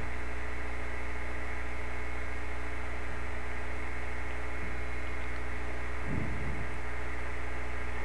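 Steady electrical mains hum in the recording chain, a set of fixed tones under a faint hiss, with a brief low rumble about six seconds in.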